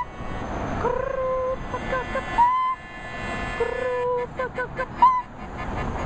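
A melody of held and short notes from a single pitched instrument or voice, some notes wavering slightly, over a steady background of street noise.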